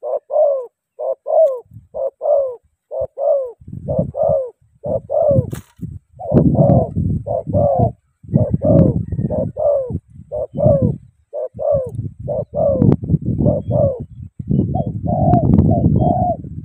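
Spotted doves cooing: a steady run of short, falling coo notes, mostly in pairs, at about two a second. From about four seconds in, bursts of low rumbling noise come and go under the calls.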